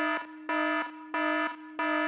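Electronic alarm-like beeping: a buzzy pitched beep repeating about one and a half times a second, about four beeps in all, over a steady unbroken tone.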